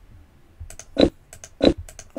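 A run of computer mouse clicks on a new mouse, stepping through the moves of a game on screen: several quick clicks, the two loudest about a second in and a little past the middle.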